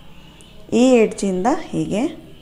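A woman speaking a short phrase after a brief pause.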